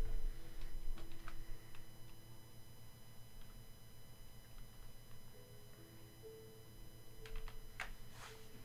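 Computer keyboard typing: a few scattered, faint key clicks, with a small cluster near the end, as a name is entered into a spreadsheet.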